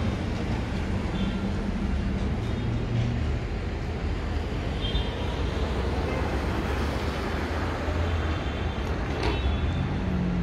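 Street traffic: cars passing with a steady mix of engine and tyre noise.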